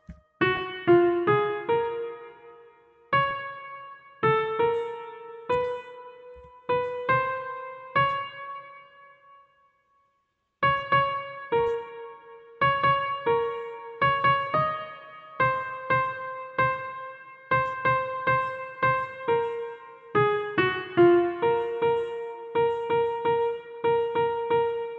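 Single notes on a piano-like software instrument in FL Studio, played live one at a time at an uneven pace, each ringing and fading. The playing stops about nine seconds in and starts again a second and a half later, with quicker notes.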